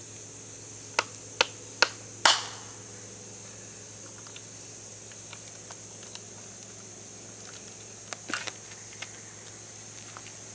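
Wood campfire crackling and popping: four sharp pops between about one and two and a half seconds in, the last the loudest with a brief hiss after it, then scattered small crackles and a short run of pops a little after eight seconds.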